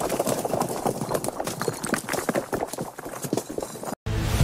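Sound effect of a stone wall cracking and crumbling: a dense, irregular run of small knocks and clatters of falling debris that thins out and gets quieter toward the end, then cuts off suddenly.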